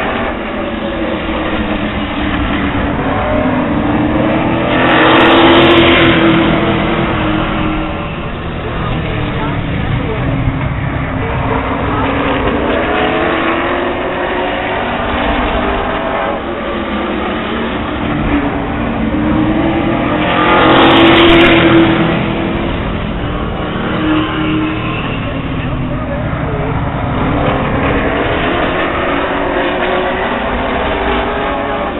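A field of Late Model stock car V8 engines circling a short oval track, their pitch rising and falling through the turns. The sound swells loud twice, about five seconds in and again about fifteen seconds later, as the pack passes close by.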